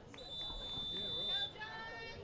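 Referee's whistle blown once: a single steady high note lasting a bit over a second, the signal for the penalty kick to be taken.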